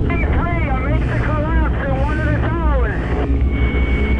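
High-pitched voices crying out in rising-and-falling wails over a deep, steady rumble, then a single steady high-pitched beep near the end.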